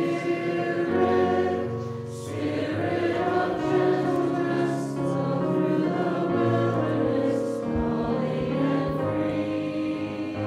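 Congregation singing a hymn together with instrumental accompaniment, in slow held notes.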